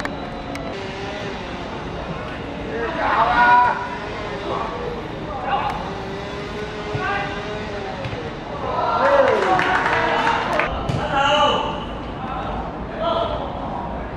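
Unclear shouting from several voices at a football match, growing into a louder burst of overlapping shouts about nine seconds in.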